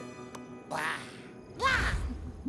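Two short, high cries from cartoon Rabbid characters, about a second apart, their pitch swooping up and down, over quiet background music.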